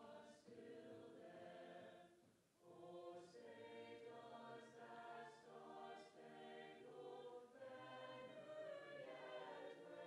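Faint choir singing slow, long-held notes, with a short break for breath about two and a half seconds in.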